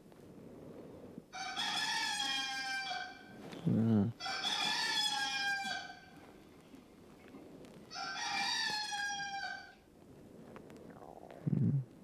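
Rooster crowing three times, each crow about two seconds long. A brief low sound comes about four seconds in and again near the end; these are the loudest moments.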